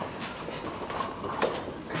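A wheelchair being pushed across a floor, its wheels rolling with light rattles and clicks.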